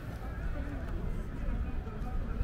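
Voices of passers-by talking, not close to the microphone, over a steady low rumble.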